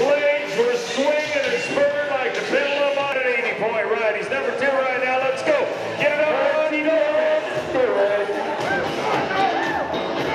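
A voice sounds throughout over background music.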